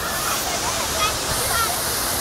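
Large ornamental fountain's tall water jets rushing steadily and splashing down into the pool.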